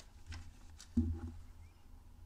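Faint rustling and handling noise from a hand working in an engine bay, with one dull thump about a second in.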